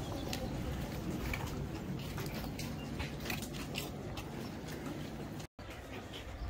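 Outdoor background noise: a steady low rumble with scattered short clicks and ticks. The sound cuts out for a moment near the end.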